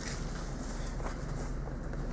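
Quiet, steady background hum and hiss of a room, with no distinct handling sounds.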